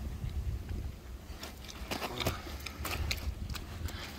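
Scattered soft knocks and rustles of a landing net and unhooking mat as a mirror carp is handled, over a steady low rumble.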